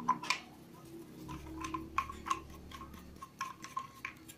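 Plastic side handle being screwed by hand into the gear head of an Orion HG-954 angle grinder, the unpowered tool handled meanwhile: a run of light, irregular clicks and taps.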